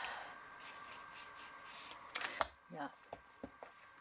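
Paper and card being handled by hand: faint rustling, with a sharp tap or click a little past halfway, followed by a brief murmured voice.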